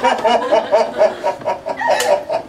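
A man imitating a hen's clucking: a quick, even run of short bobbing clucks, about four or five a second.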